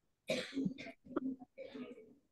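A person coughing and clearing the throat, in two main noisy bursts with a short voiced sound between them.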